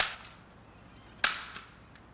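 Hand-held staple gun firing twice, about a second and a quarter apart, driving staples through fabric scrim.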